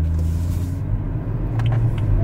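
A BMW car's engine running, heard from inside the cabin as a low steady rumble.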